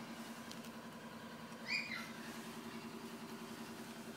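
A steady low hum throughout, and one short, high-pitched squeak from a Jack Russell puppy a little before halfway.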